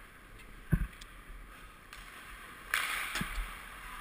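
Ice-hockey player's gear on the players' bench: a single dull knock a little under a second in, then a short scraping rustle around three seconds in, over quiet ice-rink background.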